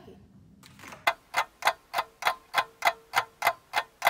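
A clock ticking fast and evenly, about three ticks a second, starting about a second in. It is a time-passing effect marking the cookies' baking time.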